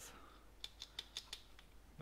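A handful of faint, light clicks and taps from a 1/10-scale RC drift car chassis being handled and turned over in the hands, spread over the middle second.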